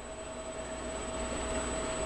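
Quiet, steady workshop background hiss and hum with a faint steady tone, growing slightly louder. No distinct clicks or knocks stand out.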